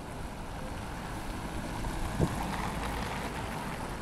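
Busy city street ambience: a steady low rumble of traffic and passers-by, with a single sharp knock about two seconds in.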